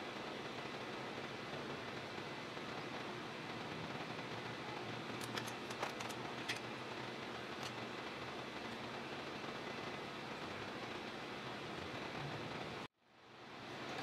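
Steady low hiss of background noise, with a few faint light ticks about five to seven seconds in. It cuts out abruptly about a second before the end.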